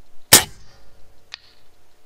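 A Benjamin Gunnar .22 PCP air rifle fires one shot: a single sharp, fairly loud crack through its shroud with a short decay. About a second later comes a short, sharp click.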